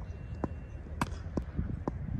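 Four sharp knocks of a cricket ball being struck and caught in a fielding drill, the loudest about a second in.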